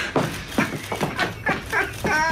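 A man laughing hard, in a string of short bursts a few per second.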